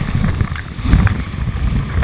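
River whitewater rushing and splashing right against a GoPro riding just above the surface of a standing wave, with a heavy uneven rumble of water and wind buffeting the microphone and a few sharp splashes.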